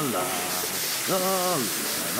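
Shower head spraying water, a steady hiss.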